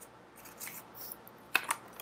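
Faint short scrapes and small clicks close to the microphone, with a sharper pair of clicks about one and a half seconds in.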